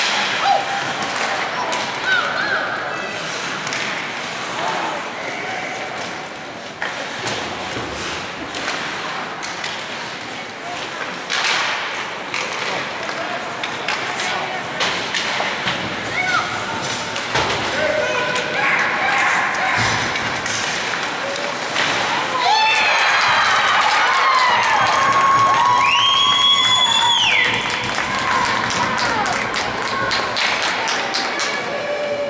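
Ice hockey play in an indoor rink: sticks and puck knocking and thudding against the boards, with spectators calling out. About three-quarters of the way through the crowd breaks into loud cheering and screaming at a goal, and a long, steady high whistle sounds near the end.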